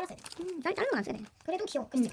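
A sung voice with gliding, arching pitch in short phrases, repeating a line heard as "I don't know": the vocals of a background song.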